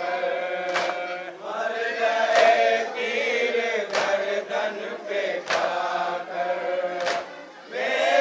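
A group of men chanting a noha lament in chorus, with five sharp slaps of hands striking chests together, about one every second and a half: the rhythmic matam chest-beating that keeps time for the mourning chant.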